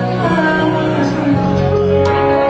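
A live duo playing a song on acoustic guitar and keyboard, with singing, as heard from the audience. The notes are held and the bass note changes a couple of times.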